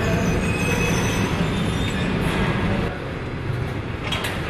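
Industrial bakery conveyor oven and its wire-mesh belt running: a steady mechanical rumble with a rattling hiss, dropping slightly in level about three seconds in.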